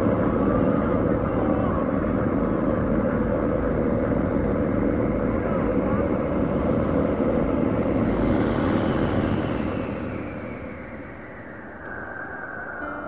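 Loud, steady aircraft drone and rushing noise with a deep rumble, a sound effect of a bomber in flight. From about eight seconds in a thin whine falls slowly in pitch as the noise fades.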